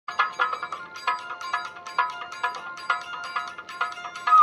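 Channel intro jingle: a bright, ringtone-like melody of short pitched notes struck in a quick, even rhythm.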